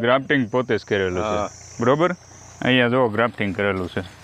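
A man talking, in short phrases with brief pauses, over a steady high chirring of insects, likely crickets, in the background.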